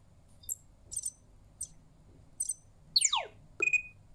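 EMO desktop robot's electronic chirps from its small speaker, reacting to a spoken question. Four short high blips are followed about three seconds in by a quick falling whistle-like sweep, then a short beep near the end.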